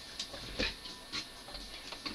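A few faint, light clicks and taps at uneven intervals.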